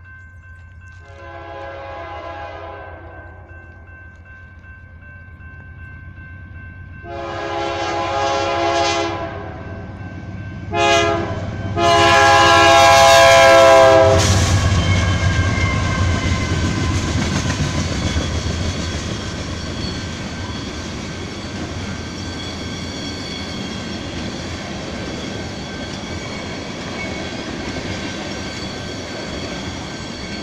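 BNSF freight locomotive's air horn sounding the grade-crossing signal, long, long, short, long, as it approaches. The diesel locomotive then passes loudly about halfway through, followed by a string of oil tank cars rolling by with steady wheel and rail noise.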